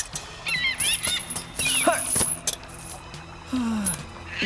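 Film-score background music with short cartoon sound effects, including several sharp clicks and a pitch that falls away near the end.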